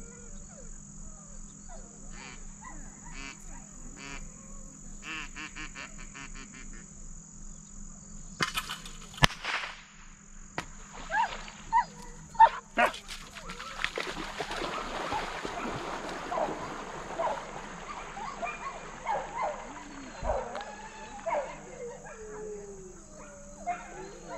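A German shorthaired pointer leaping into a lake and swimming out, a long stretch of splashing from about fourteen seconds in. A few sharp knocks come just before it, the loudest a little over nine seconds in, and short squeaky calls run through the splashing.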